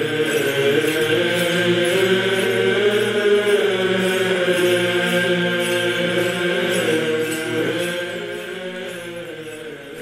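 Slow chant with long held, slowly gliding notes, swelling in at the start and fading down over the last couple of seconds.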